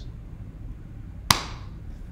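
Low room noise in a pause, with a single sharp click or tap about a second and a half in.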